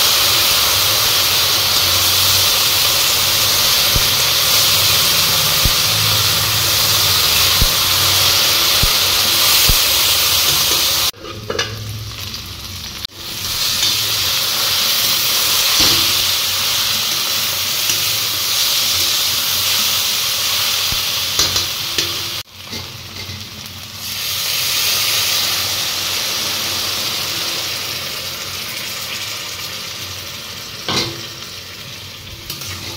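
Green beans sizzling as they are stir-fried in a metal kadai, with a metal spatula scraping and knocking against the pan. The sizzle drops away briefly twice, a little before the middle and again about three-quarters through.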